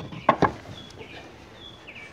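Two quick knocks near the start as a kayak paddle is handled against the fence and the other paddles. Then a small bird chirps a few short, high notes.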